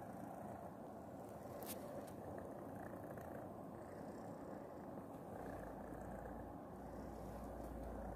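A cat purring steadily and faintly, close to the microphone. There is a sharp click just under two seconds in, and a low rumble joins over the last few seconds as the cat's body brushes against the phone.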